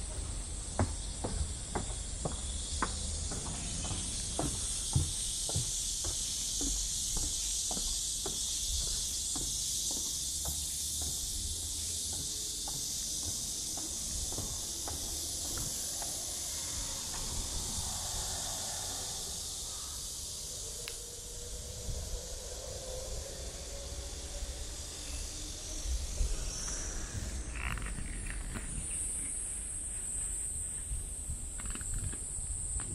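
Steady, high-pitched insect chorus running throughout. Over the first half it is joined by footsteps on a wooden boardwalk, about two a second, which fade out about halfway through.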